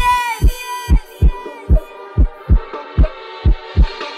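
Electronic dance music from a DJ set in a stripped-back section: a deep kick drum beats alone in a syncopated pattern, about two to three hits a second, with only faint higher sounds over it. A bright, bending synth chord rings out and fades during the first second.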